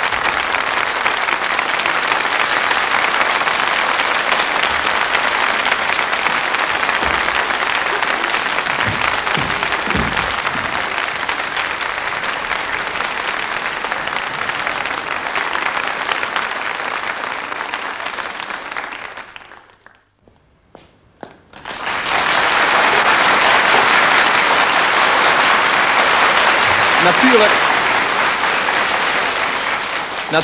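Studio audience applauding steadily. The applause fades and drops out for about two seconds just past the middle, then starts again at full strength.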